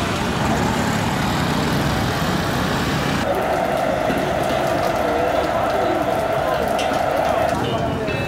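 Busy street noise with a crowd's chatter and traffic. After a cut about three seconds in, a steady tone runs with it for about four seconds.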